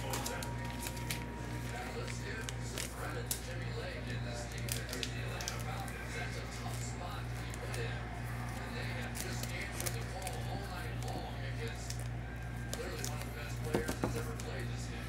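Faint plastic rustling and small clicks from handling a graded card slab and its plastic sleeve, over a steady low electrical hum.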